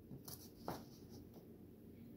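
Faint scraping of a metal fork digging vanilla ice cream out of its carton, with one light knock less than a second in.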